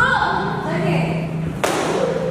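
A single sharp smack of a kick landing on a taekwondo kick paddle, about a second and a half in, with children's voices around it.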